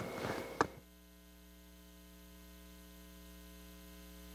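Brief studio room sound ending in one sharp click, then the programme audio cuts out abruptly under a second in, leaving a faint steady electrical mains hum from the broadcast or recording chain.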